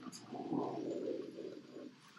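Deep guttural death-metal growl vocals in a run of short syllables, dropping away near the end.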